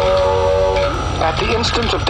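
A held musical chord ends about a second in, followed by a spoken narration sample in a documentary style about a nuclear detonation.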